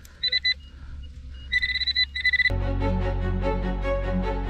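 Handheld metal-detecting pinpointer beeping in fast pulsed bursts as it is held over a target in the loose soil, two short runs of beeps signalling metal close by. About two and a half seconds in, music starts and takes over.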